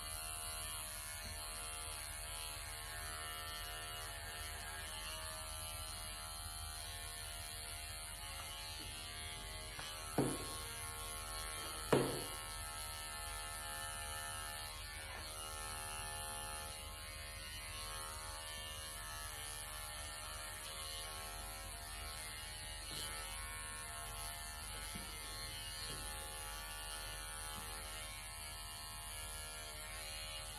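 Cordless electric pet clippers running with a steady buzz as they trim the long fur of a Persian cat's tail. Two short knocks stand out about ten and twelve seconds in.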